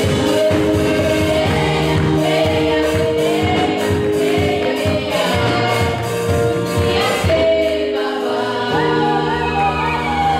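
Gospel song sung by a small group of young female singers into microphones, backed by drum kit and electric bass. Near the end the drumming stops and the voices and band hold long sustained notes.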